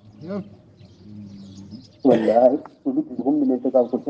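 A man's voice chanting in a melodic, wavering style. It begins about two seconds in, after a near-quiet pause, and continues in phrases.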